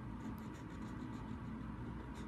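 Highlighter tip scratching across thin Bible paper in a run of short strokes, over a steady low hum.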